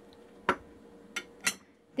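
A ceramic dish set down on a wooden cutting board: three short knocks, one about half a second in and two close together near the end.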